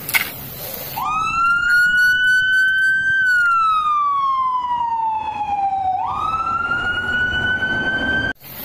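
Fire engine siren wailing: about a second in it rises quickly to a high note and holds, then slides slowly down for about three seconds and sweeps back up to hold high again.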